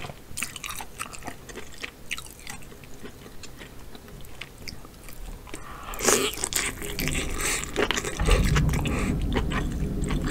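Close-miked eating of lobster tail meat: soft wet clicks as it is handled and dipped in sauce, then a loud bite about six seconds in, followed by chewing that grows louder and deeper near the end.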